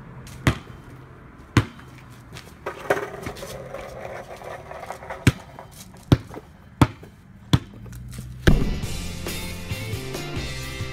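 A basketball bouncing on a hard surface, about eight sharp bounces at uneven intervals, then music starts near the end.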